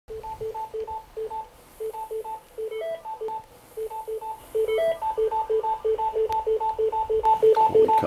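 Teleconference line heard through a desk speakerphone, sounding a fast run of short electronic beeps that alternate between two pitches, about three a second, as participants dial in: each beep is one new person logging in. The beeps grow louder about five seconds in.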